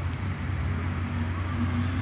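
Road traffic: a car engine running with a steady low hum.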